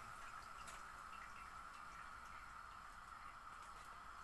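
Rounds of risen dough frying in a pot of hot oil, a faint steady sizzle.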